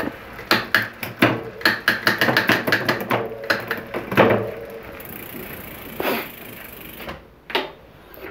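Rapid run of sharp clicks, about four or five a second, as an e-bike's rear trigger shifter is thumbed through several gears up to the highest gear, the derailleur moving the chain across the cassette while the rear wheel spins in a stand.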